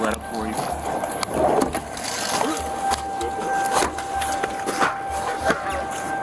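Muffled, indistinct voices and the rubbing and knocking of a body-worn camera against clothing and a seat as its wearer climbs into a vehicle. A pulsing low rumble and a faint steady high tone sit underneath.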